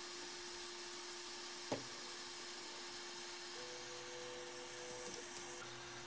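Creality Ender-3 S1 3D printer running faintly: a steady low hum, one soft click just under two seconds in, and a higher motor whine for about a second and a half past the middle as the printer moves.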